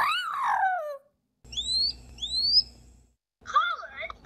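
People imitating a snow-capped manakin's call: a voice swoops high and slides down in pitch, then two short rising whistles follow.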